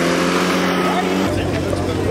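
Gasoline leaf blower's small engine running steadily with the rush of its air. Just past a second in it drops to a lower, steadier note.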